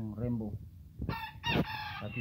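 Pelung rooster calling: two short, high, clear calls in the second half, a brief gap between them.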